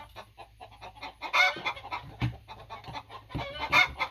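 Chickens calling in a henhouse: a few short calls about a second and a half in, and louder ones near the end, with a soft knock a little after two seconds in.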